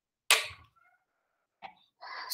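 A single short cough into a headset or laptop microphone, sudden and fading within a quarter second, followed by a faint click a second later.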